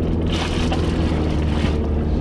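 Car driving, heard from inside the cabin: a steady low engine and road hum, with a rush of hiss that swells about half a second in and dies away shortly before the end.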